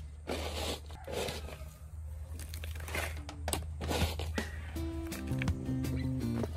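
Gritty scraping and crunching of potting soil being handled and scooped into a pot, in irregular bursts. Background music with held notes comes in near the end.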